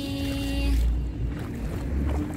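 A held note of background music ends under a second in, leaving a low, heavy wind rumble on the microphone.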